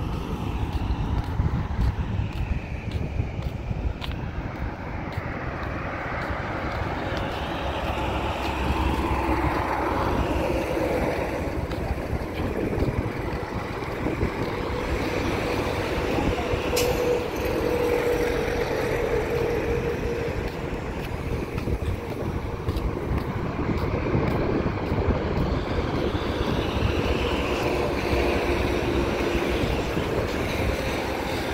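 Roadside outdoor noise: a steady low rumble of wind on the microphone mixed with distant traffic, with a faint engine hum in the middle stretch.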